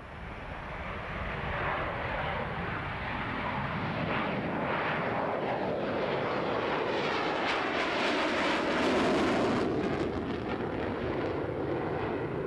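Jet engine noise of a Saab JA-37 Viggen, its Volvo RM8B turbofan, as the fighter flies a display pass. The sound builds over the first couple of seconds, has a rough, crackling edge, is loudest about nine seconds in and eases a little near the end.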